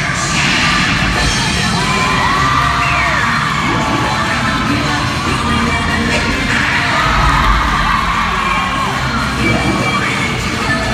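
Cheerleading routine music mix played loud over an arena's speakers, with a heavy bass beat, under a crowd cheering and yelling.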